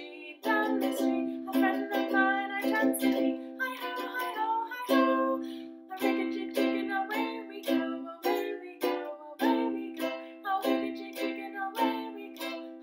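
Makala ukulele strummed in a steady rhythm, chords ringing between strokes and changing about five seconds in.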